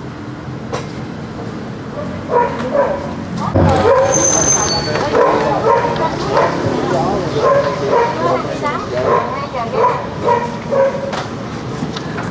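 A small dog barking and yipping over and over, starting about two seconds in, with voices underneath.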